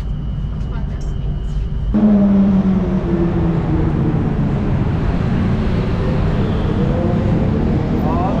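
A steady high whine over rumble inside a moving Skytrain carriage. About two seconds in it gives way to busy street traffic, with a vehicle engine's low hum loudest at first and slowly dropping in pitch.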